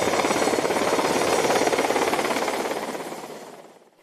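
Black Hawk helicopter overhead, its rotor blades giving a loud, rapid, steady beating that fades away over the last second or so.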